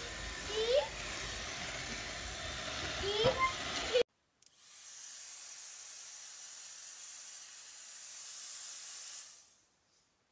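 A robot vacuum running with a toddler riding on it, whose short rising squeals come twice. After a sudden cut about four seconds in, a steady high airy hiss runs for about five seconds and fades out.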